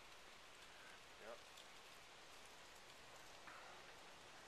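Near silence: a faint steady hiss, with a brief faint voice about a second in.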